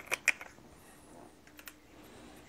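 Scattered light plastic clicks and taps from handling a cordless handheld vacuum and its charging cord: three quick clicks at the start and two more a little past the middle.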